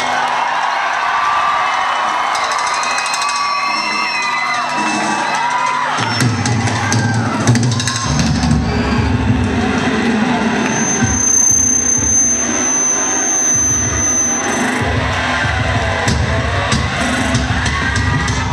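Live metalcore band playing loudly in a hall, with the crowd cheering and whooping over it. For the first six seconds the bass and drums drop out, leaving gliding, sustained high notes; then the heavy low end comes back in.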